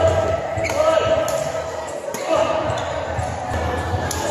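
Badminton doubles rally: several sharp racket hits on the shuttlecock, short squeaks of shoes on the court mat, and onlookers' chatter echoing in a large hall.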